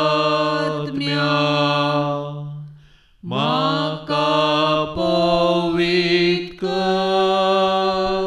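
A slow devotional chant sung in long, held notes, without clear words. Each phrase starts with a slight upward scoop in pitch, and there is a brief pause for breath about three seconds in.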